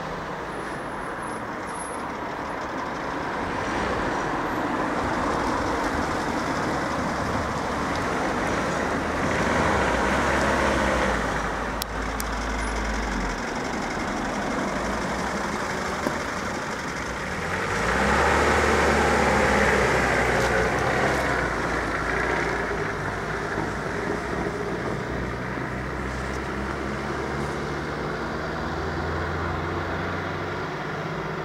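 Road traffic driving past: car and truck engines and tyre noise, swelling twice as vehicles go by, about ten seconds in and again around eighteen to twenty seconds.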